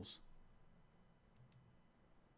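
Near silence, broken by a faint computer mouse click, two quick clicks close together about one and a half seconds in, as a spreadsheet cell is selected.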